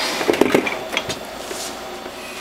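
A few light knocks and handling sounds on the stainless-steel housing of a juicer in the first second, then a steady low hum.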